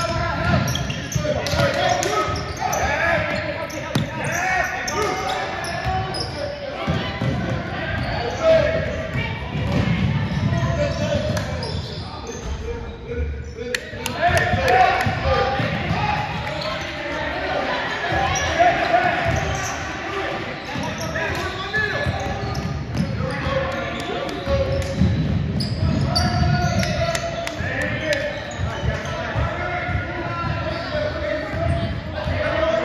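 A basketball bouncing on a hardwood gym floor during a game, with the voices of players and spectators around it in the gym.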